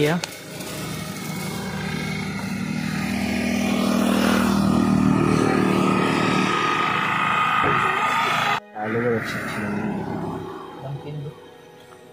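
An auto-rickshaw driving by on the road: its engine and tyre noise swell to a peak about five seconds in, then fade, and the sound breaks off suddenly near nine seconds.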